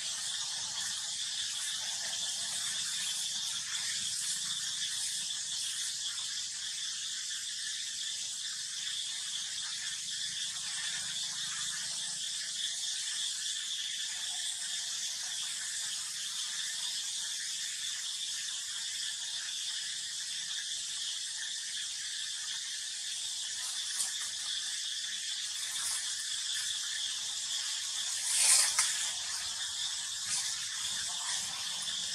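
Steady high-pitched drone of insects in the forest, an even hiss with a constant band in it. Near the end a short louder burst stands out.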